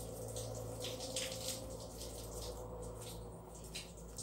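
Faint handling sounds of pearl beads being threaded onto nylon line with a needle: a few soft scattered clicks over a steady low hum.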